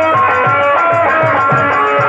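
Live Nautanki stage music: a plucked or keyed melody line over a steady beat of low folk drum strokes, played for a dance.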